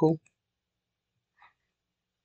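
A spoken word trails off, then near silence broken by one faint, short computer-mouse click about a second and a half in.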